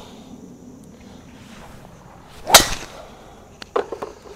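A golf driver swung at a teed ball: a brief swish rising into one sharp crack of clubface on ball about two and a half seconds in, followed by two faint ticks about a second later.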